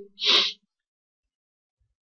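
A man's short, sharp intake of breath lasting about a third of a second near the start, then silence.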